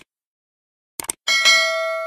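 YouTube subscribe-button animation sound effect: a short mouse click at the start, a quick double click about a second in, then a bright notification-bell chime that rings on and slowly fades.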